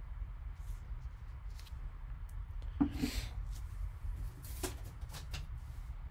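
Shrink-wrapped cardboard box being picked up and turned in gloved hands: scattered crinkles, taps and rustles of the plastic wrap, loudest about three seconds in, over a steady low hum.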